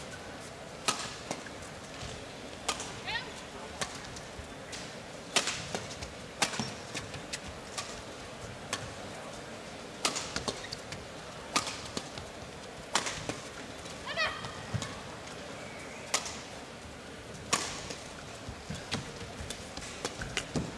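Badminton rally: sharp racket-on-shuttlecock hits, roughly one every second or so, with short squeaks of court shoes on the floor and a steady arena hum underneath.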